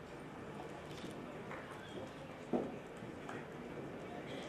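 Quiet hall room noise with a few faint light knocks, and one short dull thump a little past halfway through.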